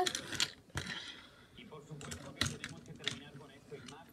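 Small plastic toy cars clicking and knocking against each other and a wooden dresser top as they are handled and coupled together: scattered light clicks at irregular intervals.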